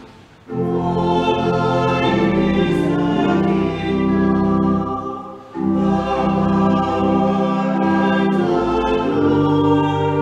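A small choir singing slow, sustained phrases, with a short break between phrases about halfway through.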